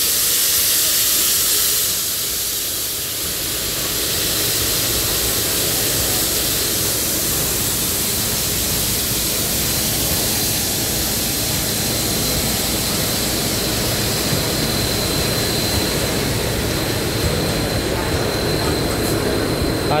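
CT273 steam locomotive standing at the platform, hissing steadily as steam vents around its front end and running gear. The hiss is strongest for the first couple of seconds, then settles to an even rush, with a faint high whine in the second half.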